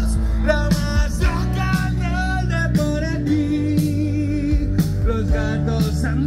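A live rock band playing, amplified: electric guitars, bass guitar and a drum kit, with a steady beat.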